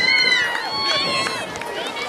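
Several children's high-pitched voices shouting and cheering over one another. The cheering fades over about a second and a half.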